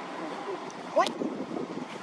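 Distant voices talking over outdoor background noise, with one short, rising squeak about halfway through.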